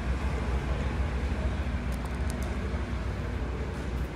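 Steady low background rumble of a large indoor hall, with a few faint clicks about two seconds in.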